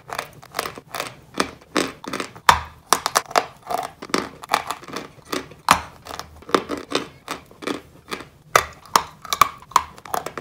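Close-up crunching and chewing of a dry, crumbly white dessert block as it is bitten and broken. Many sharp, irregular crunches come a few per second, with a few louder cracks along the way.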